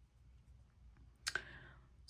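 Mostly near silence in a small room, then a single soft click about a second and a quarter in, followed by a brief faint hiss.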